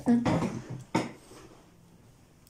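A short burst of voice, then a single sharp clatter about a second in, followed by quiet room tone.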